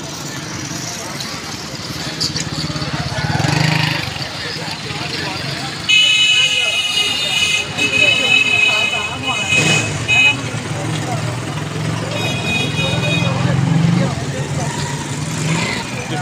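A vehicle horn sounds in a long, slightly broken honk starting about six seconds in and lasting about four seconds, then honks again briefly a little after twelve seconds. Under it a small motor-vehicle engine keeps running, with voices around.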